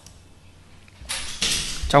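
Faint room hiss, then about a second in a loud, rushing intake of breath close to the microphone, ending as a man starts speaking.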